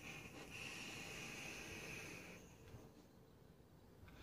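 A long draw on an e-cigarette: a faint, steady hiss of air and vapour being pulled through the device for about two seconds, then it fades to near silence as the vapour is held and let out.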